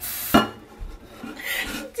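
Dishes being handled at a kitchen counter: a short rushing scrape, then a sharp clink about a third of a second in, followed by quieter rubbing and knocks.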